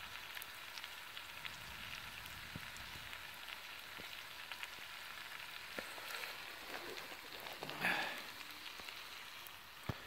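Burgers topped with Stilton sizzling in a metal mess tin beside a wood campfire: a steady faint hiss with scattered small crackles, and one louder brief noise about eight seconds in.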